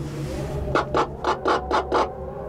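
Gondola cabin of a cable car running through the sheave rollers of a support tower: a rapid run of about six loud clacks, roughly four a second, starting under a second in, over the steady low hum of the moving cabin.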